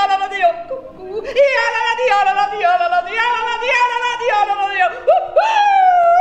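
A woman yodeling unaccompanied: a quick run of short notes with sharp leaps in pitch, rising near the end into high swooping calls.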